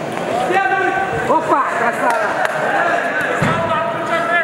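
Several men shouting over one another, with a short dull thump about three and a half seconds in.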